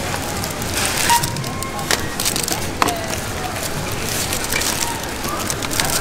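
Crackling rustle and irregular clicks of packaged groceries and plastic being handled in a wire shopping trolley, with a faint steady tone about a second in.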